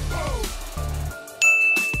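Short outro music with a heavy bass, then a bright bell-like ding about one and a half seconds in that rings on briefly, the kind of chime laid under a subscribe-button animation.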